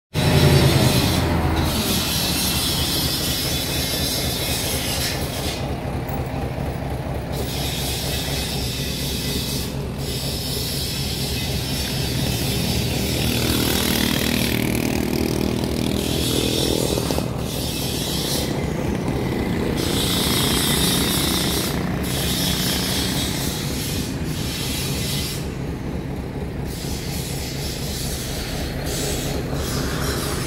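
Truck engine running steadily, with a high hiss that stops and starts every few seconds.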